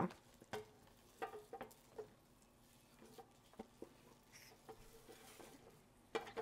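Near silence with a few faint clicks and taps, and some soft scraping near the end: a plastic food processor bowl being handled and a sticky meat mixture being scraped out of it.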